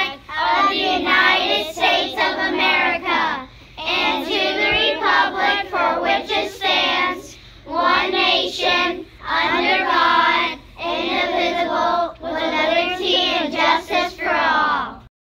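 A group of children recite the Pledge of Allegiance in unison, phrase by phrase with short pauses, their voices slightly out of step.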